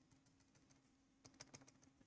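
Near silence with a low steady hum and a few faint ticks, the taps of a stylus on a pen tablet drawing a dashed line, clustered about one and a half seconds in.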